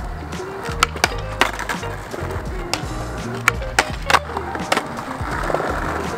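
Skateboard wheels rolling on concrete, with several sharp clacks from the board being popped and landed, over background music.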